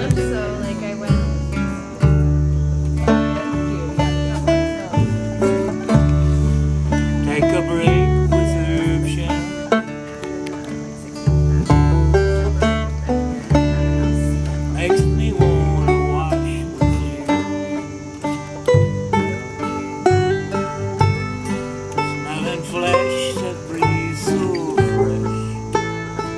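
A small acoustic string band playing a country song: an upright double bass plucking deep notes under strummed steel-string and nylon-string acoustic guitars.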